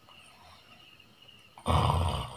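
A sleeping man snoring: after a near-silent stretch, one loud snore starts suddenly near the end.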